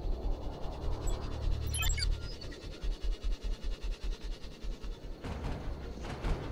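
Film background score: a low bass drone that gives way, a little over two seconds in, to a fast low pulse of about five beats a second. A falling swoosh comes about two seconds in, and a sharp hit about five seconds in.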